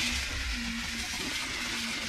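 Garden hose spray nozzle jetting water onto the fins of an HVAC evaporator coil to rinse it clean, a steady hiss that starts suddenly.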